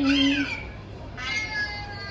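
A baby's loud, drawn-out squeal of excitement in the first half second.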